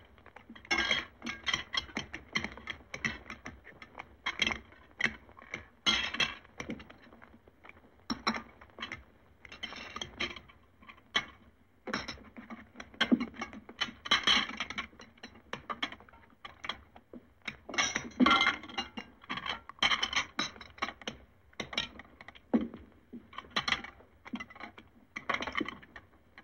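Cutlery and china clattering as several people eat at a laden table: a quick, irregular run of clinks, taps and scrapes of forks and knives on plates and dishes, with a few short pauses.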